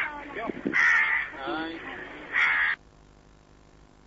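A crow cawing: two loud, harsh calls about a second and a half apart, with a man's voice alongside. The sound cuts off abruptly about three quarters of the way in.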